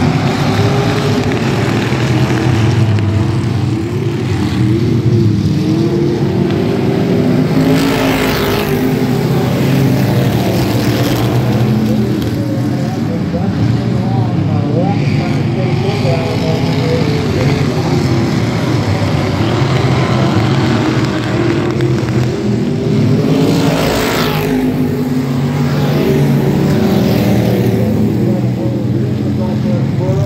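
A field of dirt-track stock cars racing at speed, several engines revving together, with the pack sweeping close past twice, about eight seconds in and again near 24 seconds.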